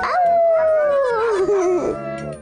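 Cartoon dogs howling: one long howl that slides steadily down in pitch, dying away near the end.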